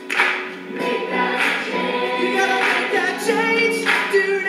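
Several voices singing together in a choir-like blend, holding and changing sung notes.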